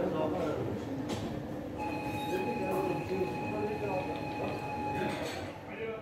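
People talking in the background, with a steady high tone sounding for about three seconds in the middle.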